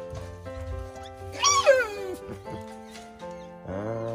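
A bamboo rat gives one loud squeal, falling in pitch, about a second and a half in, over steady background music.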